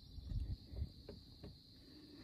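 Faint handling noises: a few light clicks and soft knocks in the first second or so, as a removed part from the car's heater and AC system is turned over in the hands, over a thin steady high-pitched hum.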